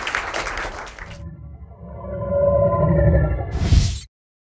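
Audience applause for about the first second, then an abrupt cut to title music: sustained tones over a heavy low end that swell louder, ending in a bright rushing burst that cuts off suddenly.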